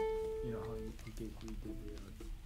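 A Koloha Opio tenor ukulele with a Tusq saddle, its last plucked note ringing out and dying away over about the first second, followed by soft talk.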